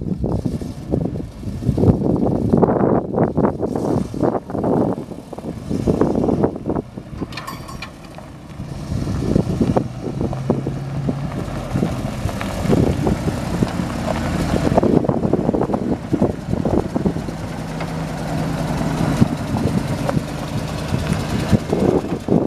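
Ford F700 truck's 7.0L V8 propane-converted engine running, uneven for the first several seconds and then settling into a steady run from about eight seconds in.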